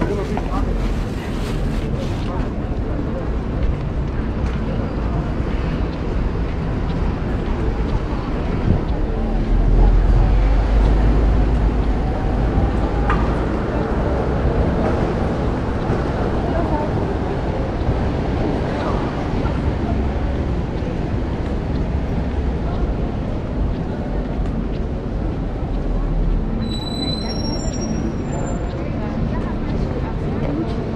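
Busy city-square street ambience: indistinct chatter of passers-by over a steady low rumble that swells for a couple of seconds near the middle. A few short high-pitched chirps sound near the end.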